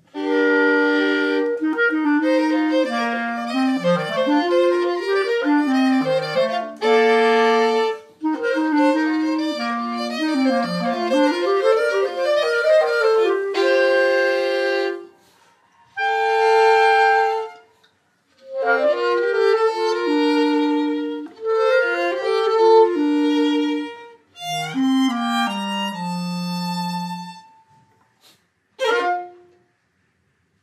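Violin and clarinet playing a chamber duo: quick phrases of moving notes broken by short pauses. A last short note sounds shortly before the end, then the playing stops.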